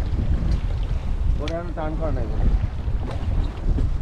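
Wind buffeting the microphone on a boat over choppy open water: a steady low rumble. A voice calls out briefly about a second and a half in.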